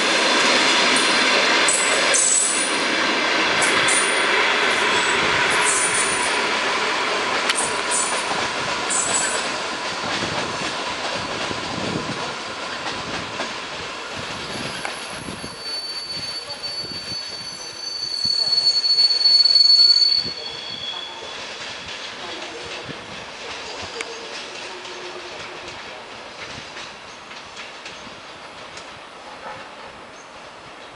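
Passenger train cars rolling past close by, steel wheels clattering with sharp high squeaks over the first ten seconds or so, then fading. From about fifteen seconds in, a high, steady wheel squeal swells and stops sharply at about twenty seconds as a second passenger train runs slowly through the station switches, leaving a quieter rolling sound.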